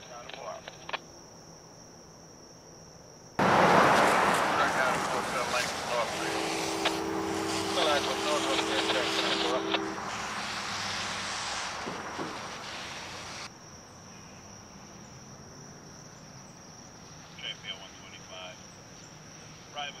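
Railroad scanner radio opening suddenly with a loud burst of static and a garbled transmission for about ten seconds, then closing off just as suddenly. A held chord of several notes sounds in the middle of the transmission. Crickets chirp steadily throughout.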